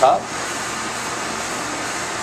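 Steady rushing noise of a ventilation fan in a commercial kitchen, even and unbroken, after the end of a spoken word at the very start.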